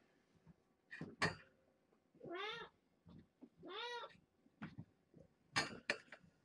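A cat meowing twice, each call rising then falling in pitch, with a few short knocks before and after.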